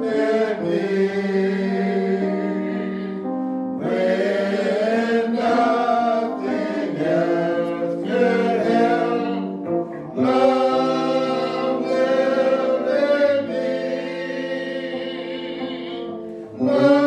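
A slow gospel hymn sung with long held notes, in phrases of several seconds with short breaths between them about 4 and 10 seconds in.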